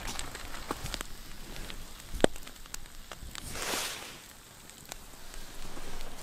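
Campfire coals crackling under a cast-iron skillet, with scattered sharp pops and one loud pop about two seconds in, and a brief hiss of sizzling near the middle.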